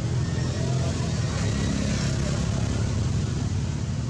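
Steady low motor rumble, even in level throughout.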